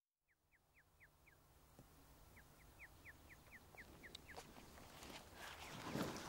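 Faint bird calling: a series of short notes, each falling in pitch, about four a second, in two runs. Beneath them is a quiet outdoor background that grows louder near the end.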